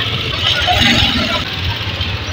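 Motorcycle loader rickshaw engine running steadily as the rickshaw pulls away.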